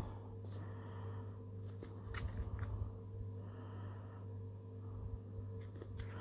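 Faint rustles and clicks of a plastic ice-pop packet being turned over in the hand, about two to three seconds in, over a steady low hum.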